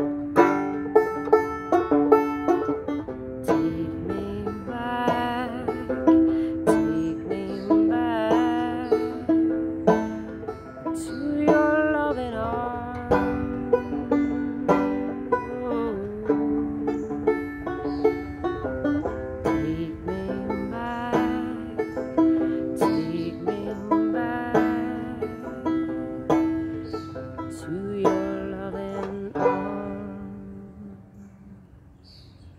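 A banjo played solo, a steady run of plucked notes in an instrumental passage. The last notes are left ringing and fade out near the end.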